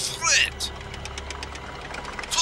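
Cartoon tank engine sound effect: a steady low rumble with a rapid clatter over it. It follows a short vocal sound in the first half-second.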